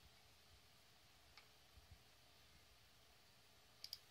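Near silence: faint room tone with a single computer mouse click about a second and a half in and a quick double click near the end.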